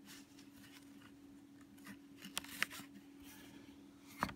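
Quiet handling of a leather knife sheath turned over in the hands, soft rustling with a few light clicks about two to two and a half seconds in, over a faint steady hum.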